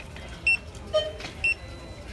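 Handheld barcode scanner beeping twice, about a second apart, each a short high tone, as it reads the barcodes on DVD cases one after another.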